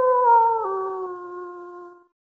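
A wolf howling: one long call whose pitch slides slightly down, drops a step a little over half a second in, and fades out near the end.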